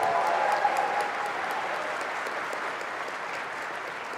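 Large audience applauding after an announcement, the applause slowly dying away.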